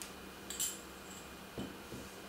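Mostly quiet kitchen with faint handling sounds: a brief light scrape of a spoon about half a second in, and a soft knock near the end as a small bowl is set down on the counter.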